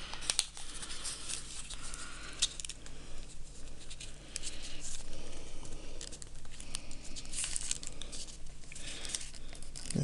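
Origami paper rustling and crinkling as the flaps of a half-folded crane are folded in and creased flat by hand, with many small crackles as the folds are pressed down. The paper is now thick and stiff to fold.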